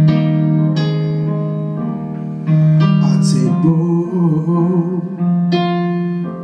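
A Roland stage keyboard playing sustained piano chords, restruck several times. Around the middle, a wavering voice line sings without clear words.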